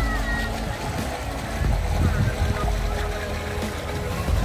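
Outdoor ambience beside a swimming pool: a low, uneven rumble throughout, with voices and music in the background.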